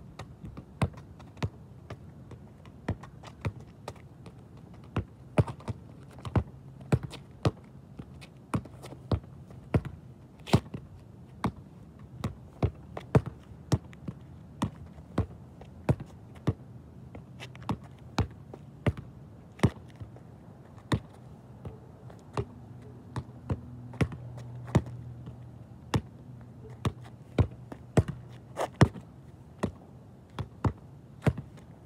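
Soccer ball kicked against a wall again and again: sharp thuds of foot on ball and ball striking the wall, coming irregularly, roughly one to two a second.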